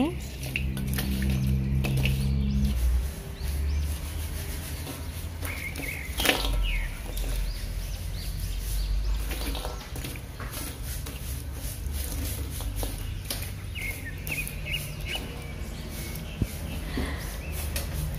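Lumps of lit charcoal clattering in a steel wok, with one sharp clatter about six seconds in, over a steady low hum. A few faint high chirps.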